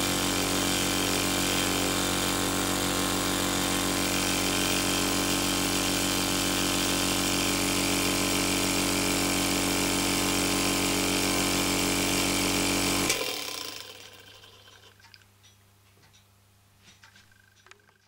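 Brass New Waat NW01 rocking-piston model engine running fast on compressed air from a small low-pressure compressor, a steady mechanical whirr. About thirteen seconds in the sound cuts off and dies away over a second or two, leaving only a few faint ticks.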